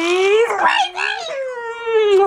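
A woman's long, drawn-out playful vocal howl, rising steadily in pitch to a peak about half a second in, then wobbling up and down, made while going in to kiss a baby.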